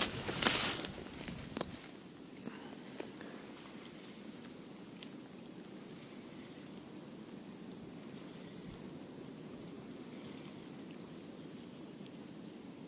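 A spinning-rod cast: a brief swish about half a second in as the line pays off the spinning reel. After that, a faint, even low sound with a few light ticks as the lure is slowly reeled back.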